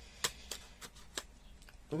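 About five small clicks and taps of plastic markers and their cardboard box being handled, the sharpest one just after the start.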